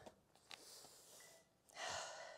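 Mostly near silence, with one short audible breath by a woman near the end, taken while she holds an exercise position on all fours.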